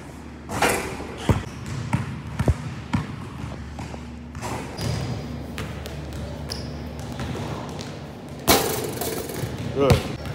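Basketball bouncing on a hardwood gym floor: several separate sharp bounces in the first few seconds, then fewer. About eight and a half seconds in there is a louder rush of noise.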